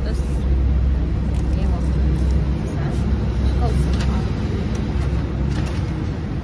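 Steady low rumble of a road vehicle's engine running close by, with faint voices in the background.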